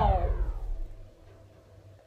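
The tail of a boy's drawn-out, falling "oooh" fading away in the first moment, over a low rumble of the camera being handled as he reaches for it; then faint room tone.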